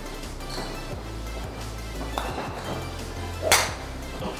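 Golf driver striking a teed ball off a practice mat: one sharp crack about three and a half seconds in, with a faint click a little before it, over background music.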